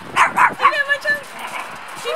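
Dogs at play: two quick yips early on, followed by a drawn-out whine that wavers in pitch.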